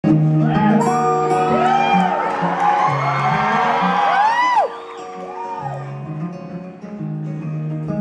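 Acoustic guitar playing the opening chords of a song live, under audience cheering and whistling. The cheering dies down about halfway through, and the guitar carries on nearly alone.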